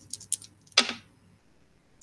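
A pair of six-sided dice rolled by hand onto a paper sheet on a table: a quick run of light clicks, then one louder knock just under a second in as they settle.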